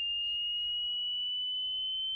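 A single high, pure electronic tone held steadily in a break in the music, its pitch creeping slightly upward.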